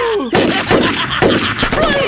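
Cartoon gunfire: three sharp shots about half a second apart, striking near the bears.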